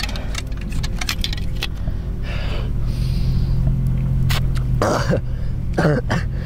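Small clicks and rattles of tactical gear and a plastic bottle being handled, over a steady low rumble, with short strained breaths or groans near the end.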